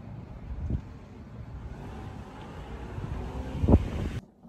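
Steady low rumbling noise, like wind on the microphone or vehicle rumble, with a dull thump about a second in and a louder one near the end.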